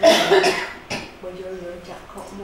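A man coughs: a loud cough right at the start, then a shorter one just under a second later, followed by soft voice sounds.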